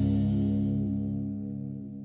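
The final held chord of a nu metal song ringing out and fading away, its steady low tones lasting while the higher ones die off first.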